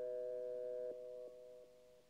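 Electronic music: a sustained chord of pure, sine-like synthesizer tones, which steps down in loudness about a second in and twice more, fading.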